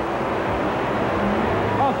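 Two monster truck engines racing side by side, a steady noisy roar with a low hum underneath.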